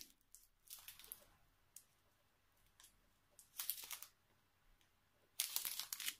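Plastic bags of diamond-painting drills crinkling and rustling as they are handled. The sound comes in a few short bursts, the loudest about three and a half seconds in and again near the end.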